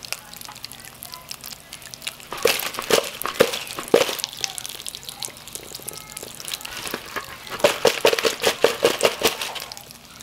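Freshly fried pork rinds crackling as they cool on kitchen paper: irregular sharp crackles and pops, coming thickest in two spells, about two and a half seconds in and again near eight seconds.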